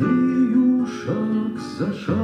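A man singing a bard song to his own acoustic guitar accompaniment, held sung notes broken by short hissed consonants.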